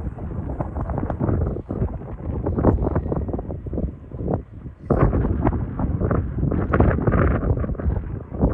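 Wind buffeting the microphone in loud, uneven gusts, easing briefly about four seconds in before picking up again.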